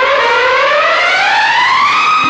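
Siren-like synthesizer tone with harmonics, gliding steadily upward in pitch as a sweep in a 1980s Bollywood film song's backing track.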